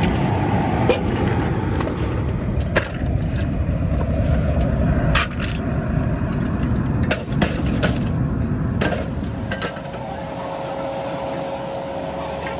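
A loud, steady low rumble of running machinery with scattered sharp knocks and clatter. About ten seconds in, the rumble eases and a steady hum sets in.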